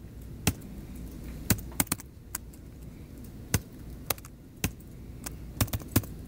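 Keystrokes on a computer keyboard: about a dozen separate, irregularly spaced clicks as code is typed slowly, a few in quick runs, over a low steady background hum.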